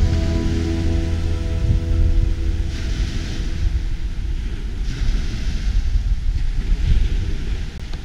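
Background music fading out, then sea waves washing ashore, swelling every couple of seconds, with wind rumbling on the microphone.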